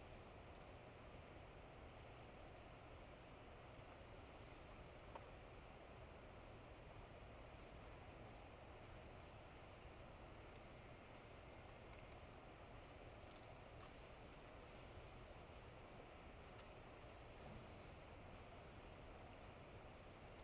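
Near silence: faint, steady room tone of a large hall, with a few small clicks scattered through it.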